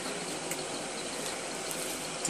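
Steady hiss of background noise with no clear event, apart from a faint tick about half a second in.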